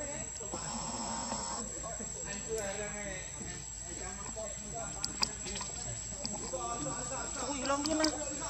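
Indistinct chattering voices and calls, with a steady high-pitched whine behind them and a few sharp clicks about five seconds in.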